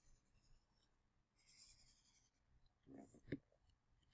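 Near silence, with a faint scratch of a stylus drawing on a tablet about a second and a half in, and a brief soft click near the three-second mark.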